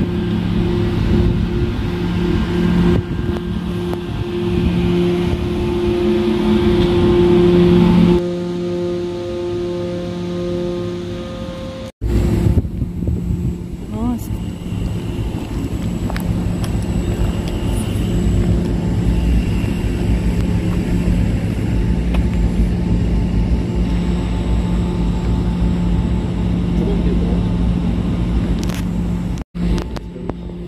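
A steady, loud mechanical hum, with a constant low drone under a noisy rush. Extra steady tones join it for a few seconds, and it breaks off abruptly twice, about twelve seconds in and just before the end.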